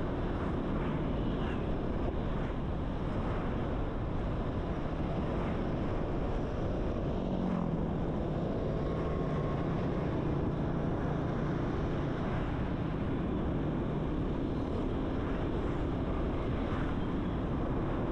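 Steady wind rush and road noise while riding a motor scooter, heard from the handlebars. A low hum comes in for several seconds in the middle.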